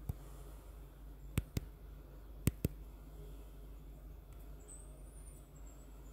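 Five sharp clicks over a low steady hum: one right at the start, then two quick double clicks about a second apart.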